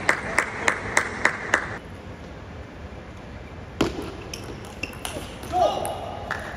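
Table tennis ball being hit back and forth in a rally: sharp clicks of bat and table about three a second, stopping about two seconds in. A few more scattered clicks follow from about four seconds in.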